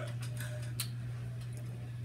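A few faint, scattered clicks in the first second, over a steady low hum.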